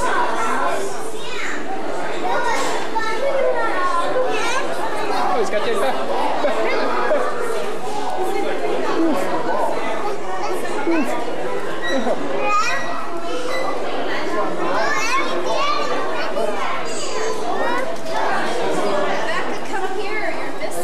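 A crowd of young children chattering and calling out all at once, many high voices overlapping continuously.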